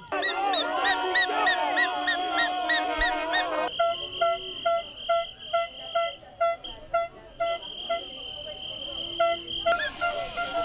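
Many handheld air horns blaring at once in a dense, clashing mass. About four seconds in this gives way to one horn sounding short blasts evenly, two or three a second, with a steady high tone held over them.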